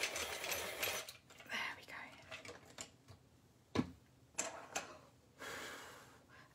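Prismacolor coloured pencils being sharpened in a pencil sharpener: a rasping grind for about the first second, then fainter scraping and a few clicks.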